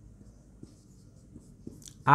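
Faint scratching of a marker writing on a whiteboard in short strokes, with a slightly louder stroke near the end.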